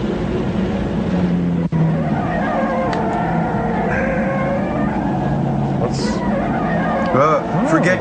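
Sci-fi film sound effects: a steady droning, engine-like hum from the flying alien ship, cut off briefly about two seconds in. Wavering, warbling tones come in near the end.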